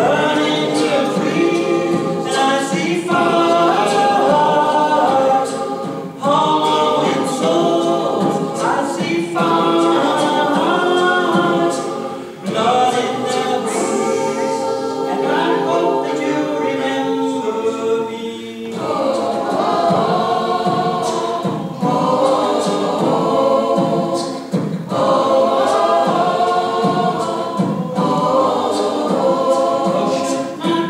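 Mixed choir of men's and women's voices singing together in several parts, in phrases of about six seconds with brief breaks between them.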